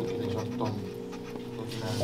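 Sustained keyboard chords held under a person's wordless vocal sounds, heavy breath-like utterances rather than speech.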